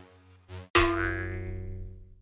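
Electronic background music with a light beat, broken about three-quarters of a second in by a sudden loud hit whose tone rings on and slowly fades away.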